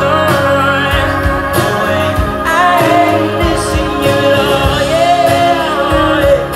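Live band playing, with acoustic and electric guitars, and a male voice singing long, wavering held notes over them.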